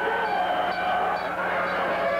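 Party horn noisemakers blowing a steady honking tone, with voices underneath.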